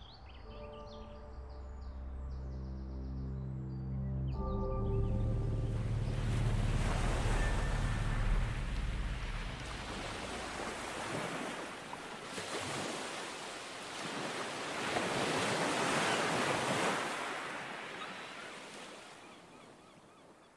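A sustained low synth chord fades out over the first few seconds. Then sea waves wash in, swelling twice and fading away near the end.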